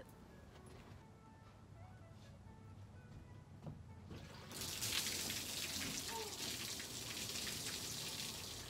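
Water poured out of a metal bowl, splashing onto a sanded tabletop. It starts suddenly about halfway through, after a quiet first half, and runs on steadily.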